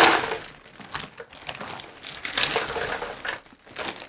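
Thousands of thick cardboard Clementoni jigsaw pieces pouring and rattling out of a torn-open plastic bag into the cardboard box, with the bag crinkling. Loudest at the start, with a second surge a little past two seconds in.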